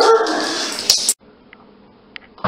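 German Shepherd whining and yipping, with a sharp click near the middle. It cuts off suddenly a little over a second in, leaving faint room tone.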